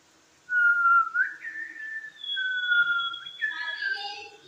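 Clear whistled notes begin about half a second in. A lower whistle slides up, holds, then drops back, and a higher steady whistle tone joins about two seconds in.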